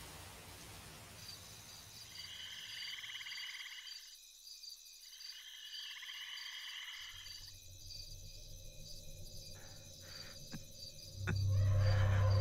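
Night-time insect chorus, crickets chirping in a steady high pulsing trill, with two louder trilling bursts in the first half. Near the end a low drone of film score swells in.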